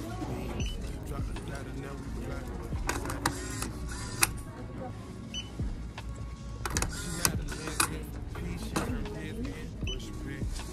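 Retail checkout ambience: background music and indistinct voices. Over them come sharp clicks and clatter from items being handled at the register, loudest about four seconds in and again around seven to eight seconds in.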